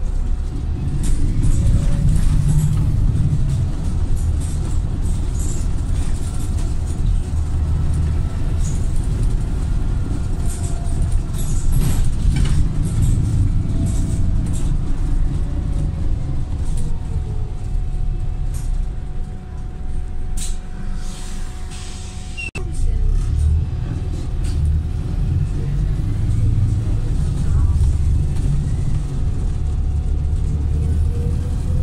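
Cabin sound of a Volvo B5TL double-decker bus under way: the diesel engine runs with a steady low rumble, with rattles and clicks from the bus body. About twenty seconds in the engine eases off and goes quieter; a single sharp knock comes about three seconds later, and then the engine pulls strongly again.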